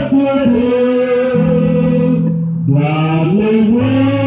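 A slow hymn sung into microphones in long held notes over an electric bass guitar playing sustained low notes. The voices break briefly for a breath about two and a half seconds in, then carry on.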